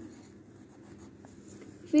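Faint scratching of a pen on workbook paper as the letters of a word are written by hand.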